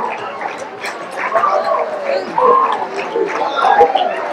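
School-theatre audience clapping and cheering, with many voices shouting and whooping over each other.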